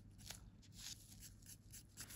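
Near silence, with faint, scattered rustles and scratches from gloved hands handling a glittered nail tip on a swatch stick.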